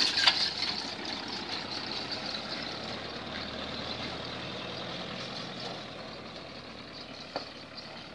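Truck engine running as the truck pulls away along a dirt road, fading steadily as it drives off.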